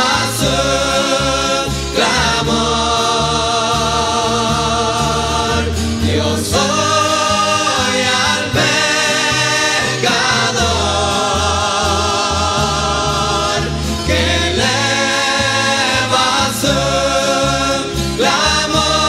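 A Christian rondalla choir singing long, wavering held notes over guitar accompaniment and a bass line, the chords changing every few seconds.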